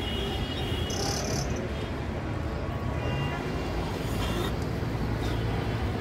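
Road traffic ambience: a steady low rumble of car and microbus engines idling and moving, with a brief high tone about a second in.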